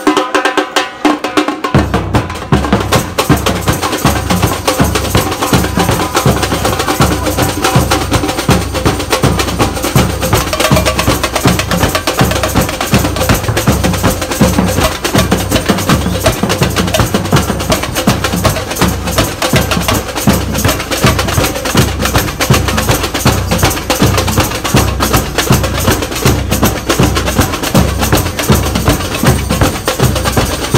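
Street samba percussion group (batucada) playing a fast, dense rhythm on stick-beaten snare drums; deep bass-drum strokes join in about two seconds in and drive the beat from then on.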